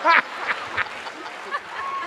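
A woman laughing into a microphone in quick ha-ha pulses, three more in the first second, then trailing off.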